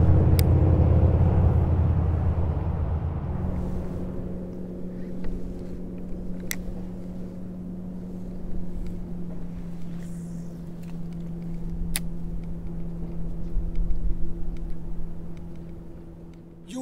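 A motor engine's low rumble, loud at first and fading away over the first few seconds, then a steady droning hum. Three sharp clicks come through it, a few seconds apart.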